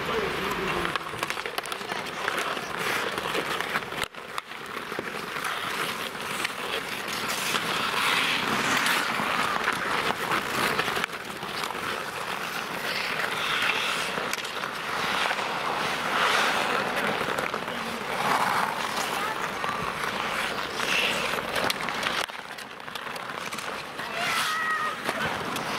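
Outdoor ice hockey in play: skate blades scraping the ice and sticks clacking, under the shouts and voices of players and onlookers. The sound drops out briefly about four seconds in.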